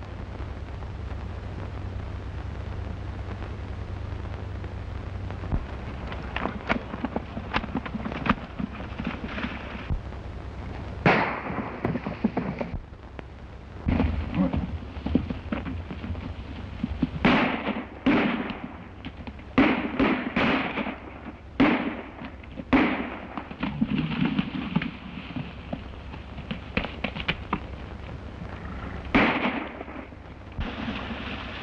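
Gunshots: scattered single reports and quick clusters that begin about six seconds in and come thickest in the second half, each trailing a short echo. Beneath them runs the steady hiss and hum of an early sound-film track.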